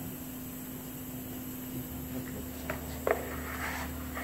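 Workshop room tone: a steady low hum, with a deeper rumble joining about two seconds in and two short clicks about three seconds in.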